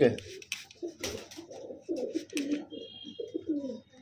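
Domestic pigeons cooing: a run of low, repeated coos one after another.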